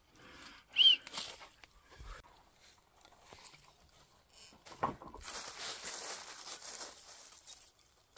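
Chain oil being poured from a plastic bottle into a Stihl chainsaw's oil tank: a few faint handling clicks and a brief squeak about a second in, then a steady hiss of pouring for a couple of seconds in the second half.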